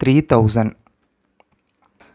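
A man's voice says one short word, then a few faint ticks of a stylus tapping on a tablet screen while digits are handwritten.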